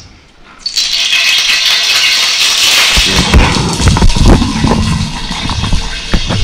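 Fish dropped into hot cooking oil, frying with a sudden loud crackling sizzle about a second in that settles somewhat after a few seconds. Low knocks and handling noise run through the second half.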